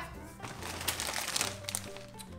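Crinkling of a foil-lined plastic chip bag and the tote bag it is pulled from. The rustle of stiff packaging starts about half a second in and fades near the end, over background music.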